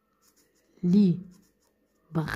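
Felt-tip marker writing on paper, faint and scratchy. About a second in, a voice holds a single drawn-out syllable with a falling pitch.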